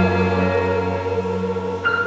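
Live chamber ensemble of grand piano, two violins and cello playing sustained chords under a woman's held sung note, moving to a new chord near the end.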